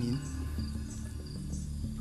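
Insects chirping with faint high calls, over a low, sustained background music drone.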